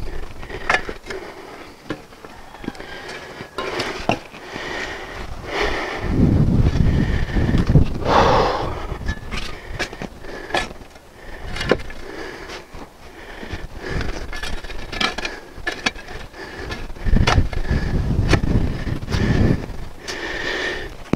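Steel shovel scraping and chopping through loose topsoil as it is spread out evenly in a deep planting hole: a long, uneven run of short scrapes and knocks. Two stretches of low rumble, about six seconds in and again near the end.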